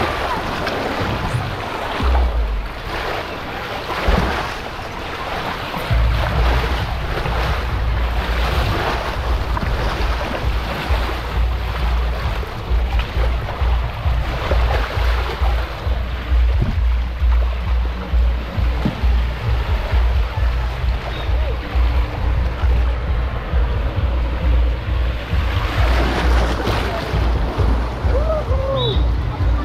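Rushing water and the rumble of a rider sliding down a fiberglass flume water slide, with wind buffeting the microphone. A heavy low rumble sets in about six seconds in, and the run ends in the splash pool near the end.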